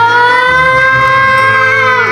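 A young girl's voice holding one long, high, steady note that drops away at the end, over background music.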